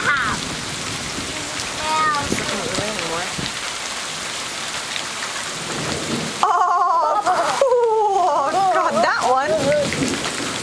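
Steady rain falling. From about six and a half seconds in, a child's voice rises over it, loud and wavering in pitch.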